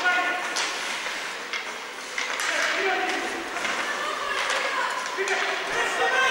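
Live ice hockey play in an indoor rink: skates scraping the ice, a few sharp clacks of sticks and puck, and players' short shouts over a steady rink hum.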